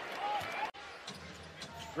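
Basketball game sound: a ball dribbled on a hardwood court, with faint knocks over an arena crowd murmur. The sound cuts off abruptly about two-thirds of a second in, and the crowd murmur and dribbling pick up again after it.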